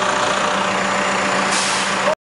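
Caterpillar backhoe loader's diesel engine running steadily. A hiss joins it about a second and a half in.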